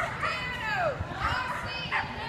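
High-pitched shouted calls from a person's voice, several short cries each falling in pitch, echoing in a large hall: the handler calling cues to the dog as it runs the jump course.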